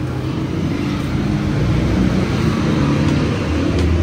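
Street traffic: motor vehicle engines running as a steady low rumble that grows slowly louder.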